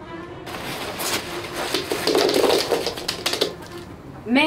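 Rustling and crinkling of a backpack full of candy being rummaged through, with small clicks, loudest around the middle, over quiet background music.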